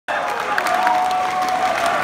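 Concert crowd applauding and cheering, dense clapping, with a steady held tone sounding through most of it.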